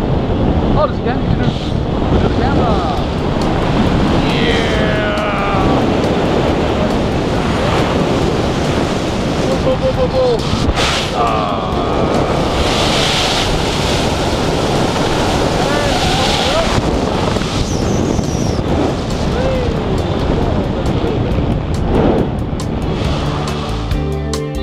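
Loud wind buffeting the helmet-camera microphone as a tandem parachute canopy is steered through steep spiral turns, the rushing air noise steady throughout.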